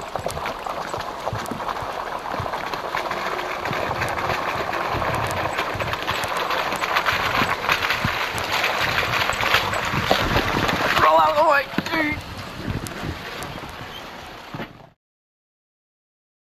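4x4 pickup truck crawling over a rocky trail: engine and tyres crunching and clattering on stones, growing louder as it comes closer, then fading. A short voice sounds about 11 seconds in, and the sound cuts out to silence a few seconds later.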